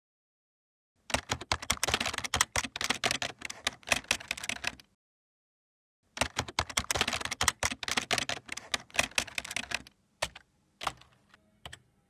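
Fast typing on a computer keyboard: two bursts of rapid key clicks, each about four seconds long, separated by a pause of about a second. A few single key presses follow near the end.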